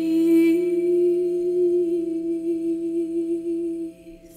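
A woman's voice holding one long, slightly wavering note over a steady low accompaniment note; both break off just before the end.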